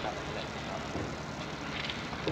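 Steady hiss and low hum of an old archival recording, with faint, indistinct voices in the background.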